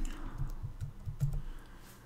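Typing on a computer keyboard: a quick run of keystrokes in the first second and a half, then a pause.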